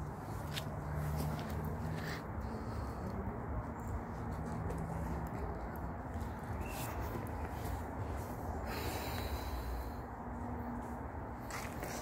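Steady low rumble of wind and handling noise on a phone microphone carried by someone walking, with a few faint clicks.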